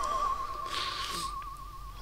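Spooky theremin-style sound effect: one high wavering tone with an even vibrato, fading away and stopping at the end.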